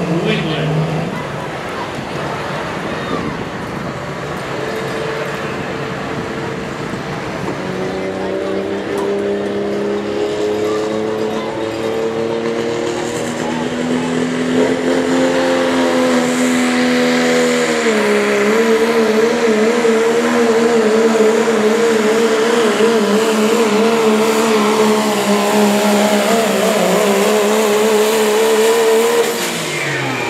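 Modified diesel pulling truck running flat out under load while dragging a sled. Its engine note climbs slowly, dips briefly a little past halfway, then holds with a wavering pitch and stops abruptly near the end.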